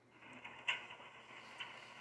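Faint background noise with one short click about two-thirds of a second in.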